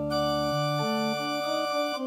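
Electronic keyboard on an organ sound, improvising freely: held chords that do not fade. A low bass note stops about half a second in, then a short line of notes steps about in the middle register under the sustained upper tones.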